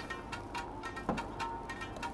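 Soft background music with a light ticking beat.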